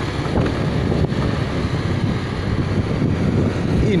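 Wind rushing over the microphone of a moving motorcycle, with steady low rumbling engine and road noise underneath.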